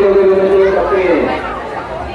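A man's voice holding one long, steady note that slides down and fades about a second and a half in, over crowd chatter.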